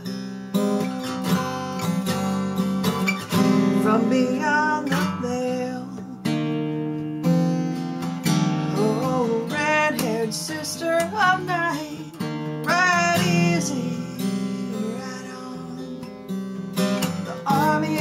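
Acoustic guitar strummed and picked, with a woman singing over it in a slow song.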